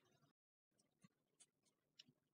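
Near silence: a pause between sentences of narration.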